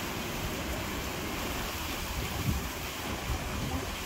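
Steady wind noise and ocean surf: an even hiss with a low rumble underneath.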